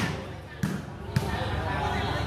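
A volleyball being struck by players' hands during a rally: two sharp slaps about half a second apart, the first about half a second in.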